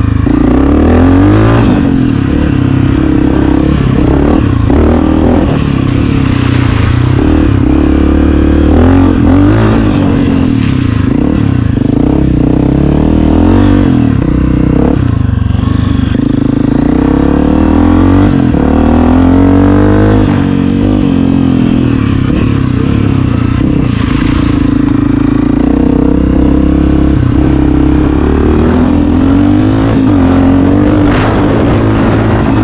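Honda CRF250F's single-cylinder four-stroke engine under riding load, its pitch rising and falling over and over as the rider works the throttle and shifts through the gears.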